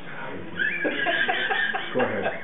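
A person laughing: a run of short voiced pulses, about four a second, starting about half a second in.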